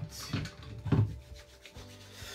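Rubbing and rustling of a person moving about at a desk, with a dull knock about a second in.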